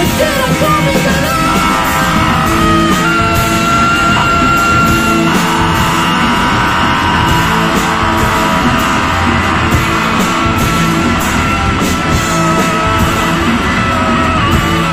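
Live rock band playing: electric guitar over a drum kit, with cymbals struck in a steady rhythm and held guitar notes ringing.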